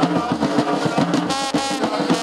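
Live brass band of trumpets and a large horn playing a lively tune of short, repeated notes over drums.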